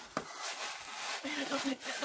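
Styrofoam packing rubbing and scraping against cardboard as a box is unpacked, with a short click just after the start.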